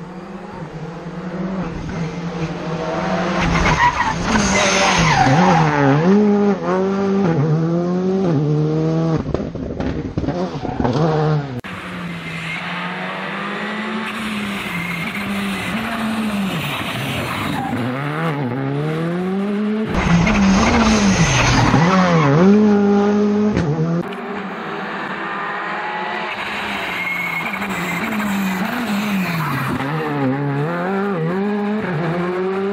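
Škoda Fabia rally car's turbocharged 1.6-litre four-cylinder engine revving hard, pitch climbing and dropping again and again through gear changes and lifts, with tyres squealing through the hairpins. The sound comes in several passes joined by abrupt cuts.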